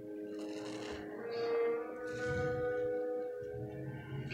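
Background music with held notes, over two wet squelches about two seconds apart as a soap-soaked sponge is squeezed in a basin of thick foam.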